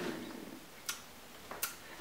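Two short, sharp clicks less than a second apart, faint against a quiet room.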